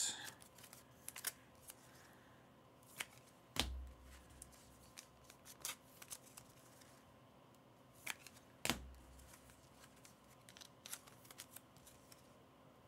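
Trading cards being slid into rigid plastic toploaders and handled, heard as faint scattered clicks and plastic taps, with two louder knocks about three and a half and eight and a half seconds in.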